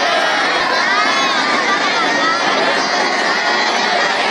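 A large group of schoolboys' voices raised together in unison, held at a steady, loud level with no breaks.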